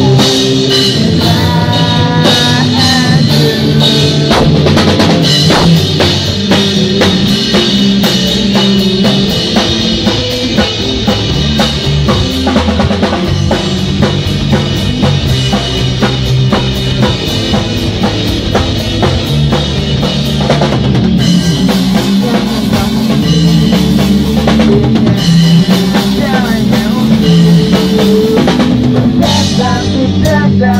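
Rock band playing live in a rehearsal room: a drum kit with bass drum, snare and cymbals keeps a steady beat under electric guitars.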